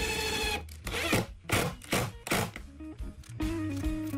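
Cordless drill driving screws into cedar boards in several short bursts, the first a brief whine at the start, over background music.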